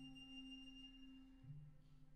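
Wind ensemble playing a very soft passage: a held chord fades away about a second in, and a low note comes in near the end.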